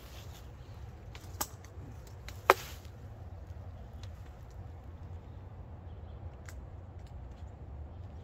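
Rope and metal carabiner hardware being handled while rigging a tether on a pole: a few light clicks, then one sharp click about two and a half seconds in, over a steady low rumble.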